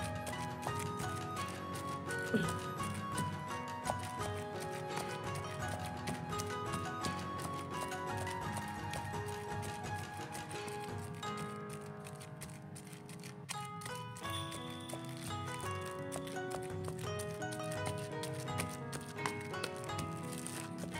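Background instrumental music over repeated soft thuds of a pounder mashing steamed sweet potato in a stainless-steel bowl.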